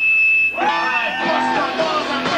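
Live rock band: for the first half second the band drops out, leaving a single loud, high, steady tone. Then a shouted, sliding vocal comes in with guitar and drums playing under it.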